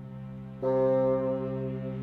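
Bassoon and chamber orchestra holding long sustained notes over a steady low drone. A louder held note comes in suddenly about half a second in.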